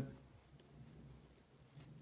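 Near silence: room tone with a faint low hum.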